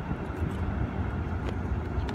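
Outdoor background noise: a steady low rumble with no distinct event.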